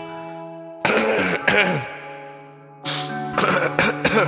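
Coughing recorded into a hip hop track: two short fits of a person coughing, about a second in and near the end. They come over a held synth chord that fades away, before the beat drops.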